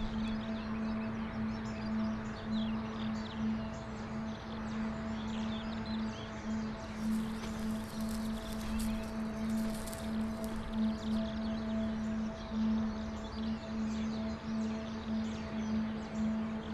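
Background film-score music: a steady, sustained drone with a low hum and a fainter higher tone held above it. A faint gritty rustle rises over it in the middle.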